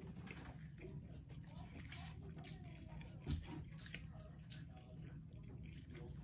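Quiet chewing and wet mouth sounds of someone eating a sushi roll, with scattered small clicks and a soft thump about three seconds in.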